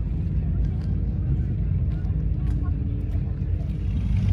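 Outdoor ambience dominated by a low, unsteady rumble of wind on the microphone, with a faint steady engine hum in the distance and faint voices of people around the beach.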